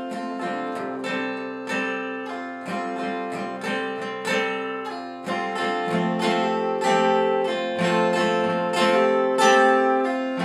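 Steel-string acoustic guitar strummed in a steady rhythm, each stroke's chord ringing on into the next.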